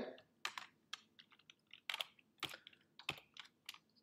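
Keystrokes on a computer keyboard: a series of separate light key clicks at an irregular pace.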